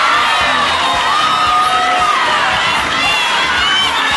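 Studio audience cheering and screaming, many high voices at once, in response to an answer.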